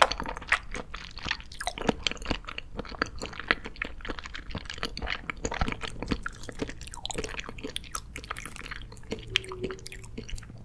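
Close-miked chewing of soft gummy and jelly candy: a steady run of many small, quick mouth clicks and squishes.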